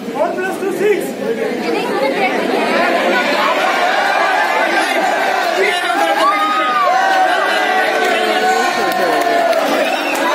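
Audience chatter in a large hall: many voices talking over one another at once, swelling a little about two seconds in and then holding steady.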